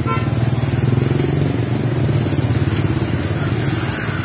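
A small engine running steadily at an even pitch.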